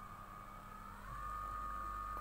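Lifelong 25-watt handheld electric body massager running, its motor giving a steady high whine that rises slightly in pitch about a second in.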